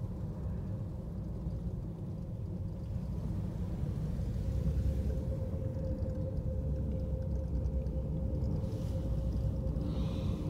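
Steady low rumble inside a moving gondola cabin as it rides down the cable, growing a little louder about halfway through, with a faint steady hum running over it.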